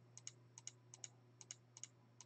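Faint computer mouse clicks, each a quick press-and-release pair, repeating about twice a second as the toggle checkboxes are clicked.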